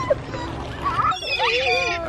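Young children's excited, high-pitched squeals and cries, the voices rising and falling in pitch, as they chase a flock of gulls.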